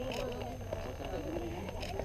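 Indistinct chatter of several voices talking, quieter than the nearby talk just before and after.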